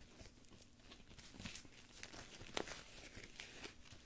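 Faint rustling and crinkling as the fabric and straps of a heavy-duty leg brace are handled, with a couple of sharper clicks partway through.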